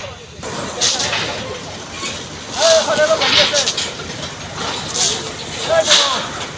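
Indistinct voices of people calling out, loudest about halfway through and again just before the end, over a steady hiss.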